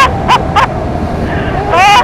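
A woman's short, high-pitched squeals and laughs, several quick rising yelps, over the steady noise of a motorcycle ride.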